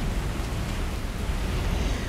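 Strong gusting wind buffeting the phone's microphone: a steady low rumble with a hiss over it.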